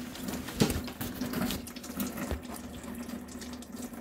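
Coolant siphoning out of the overflow reservoir through a hose and trickling into a drip pan, an uneven patter of small splashes.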